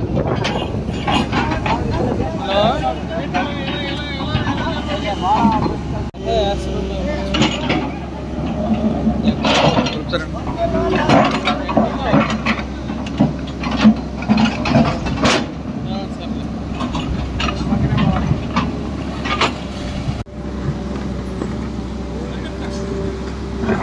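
Tracked hydraulic excavator's diesel engine running steadily while it digs silt out of a concrete canal, with occasional sharp knocks. People talk over the engine noise throughout.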